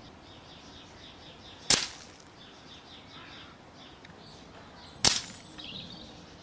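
Two sharp cracks of an air rifle shooting pellets into a tin can packed with ice, about three and a half seconds apart.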